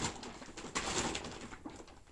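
Groceries being handled while rummaging in a shopping bag: a sharp click, then, about a second in, a brief burst of packaging rustling.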